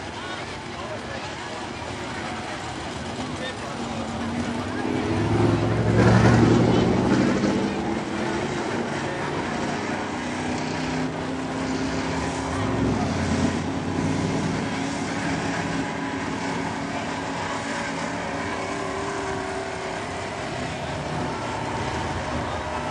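A dirt modified race car's V8 engine running at low speed on a slow lap, growing loudest as it passes about six seconds in, with a second, smaller swell a few seconds later.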